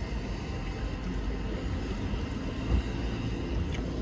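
Steady low rumble of a stationary car's interior, with a few faint light clicks near the end.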